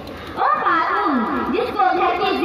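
A voice speaking through a microphone and loudspeakers, in a sing-song delivery with wide rises and falls in pitch, resuming after a brief pause at the start.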